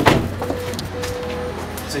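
A car door shuts with a single thump at the start, followed by a steady low hum and a faint tone that comes and goes.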